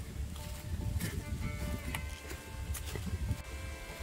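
Soft background music with long held notes, under scattered light crunches of footsteps on dry leaves and a low wind rumble on the microphone.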